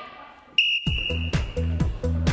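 A sports whistle blown once, a single steady high blast lasting about a second that starts about half a second in. Just after the blast begins, background music with a steady beat of about four beats a second comes in.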